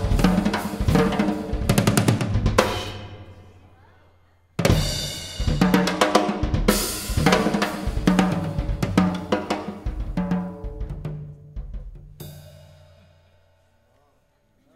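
Gretsch drum kit played with sticks in a solo: fast snare, tom, bass drum and cymbal strokes. The playing breaks off for about two seconds while the cymbals ring away, crashes back in at full force, and then stops again near the end, leaving a cymbal ringing.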